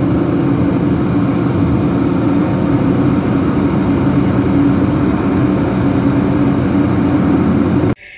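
Car driving along a road, heard from inside the cabin: steady, loud engine and road noise with no change in speed.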